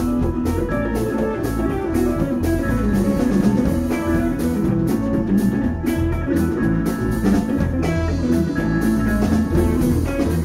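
Live band playing an instrumental passage: electric guitars over bass and a drum kit keeping a steady beat.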